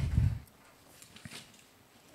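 Faint rustling and light paper clicks of thin Bible pages being leafed through by hand.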